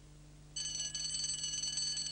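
Twin-bell alarm clock ringing: a steady high ring that starts about half a second in and keeps going.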